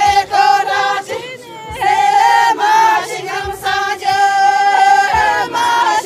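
A group of Hyolmo women singing a folk song together in unison, holding long notes, with a short break for breath about a second and a half in.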